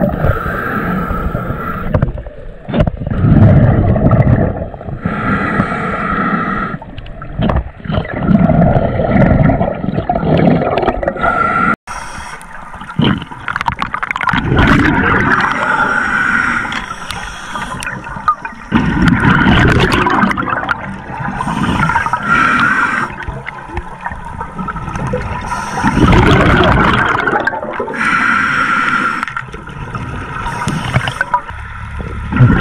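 Scuba regulator breathing heard underwater: a recurring cycle of hissing inhalations and gurgling rushes of exhaled bubbles, every few seconds.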